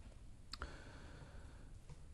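Quiet room tone with a faint click about half a second in and a second, fainter click near the end.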